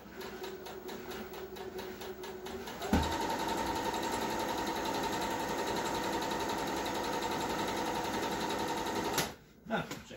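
Janome sewing machine stitching through fabric at a moderate, even pace. About three seconds in it speeds up sharply and runs fast and louder for about six seconds. It stops suddenly shortly before the end.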